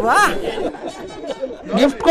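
Speech only: several voices chattering and talking over one another.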